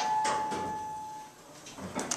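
Montgomery traction elevator's chime: a single electronic ding at the start that rings on and fades away over about a second.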